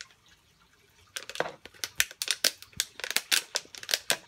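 Thin plastic bottle crinkling and crackling as hands grip and squeeze it. A quick, irregular run of sharp crackles starts about a second in.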